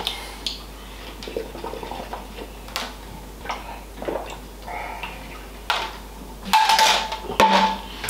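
A man drinking a whey protein shake from a plastic shaker bottle, with scattered light clicks and knocks of the bottle and a louder stretch near the end.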